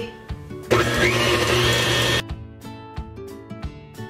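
Electric mixer with a wire whisk whipping egg whites in a metal bowl. It starts about a second in with a whine that rises as it comes up to speed, runs for about a second and a half, then stops abruptly. The whites are still runny and have not yet reached peaks.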